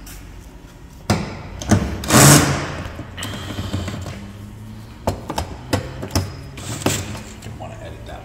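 DeWalt cordless driver with a socket running in a short burst on a bolt in the frunk tub about two seconds in, among several sharp clicks and knocks of the tool and socket against the bolt and plastic. The socket fitted is the wrong size for the bolt.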